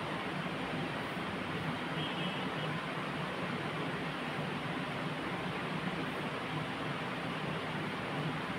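Steady room noise: an even hiss with no distinct events, picked up by a clip-on microphone.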